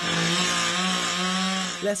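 Chainsaw running at a steady high speed while clearing fallen, ice-broken tree branches; it cuts in abruptly and holds one unchanging pitch.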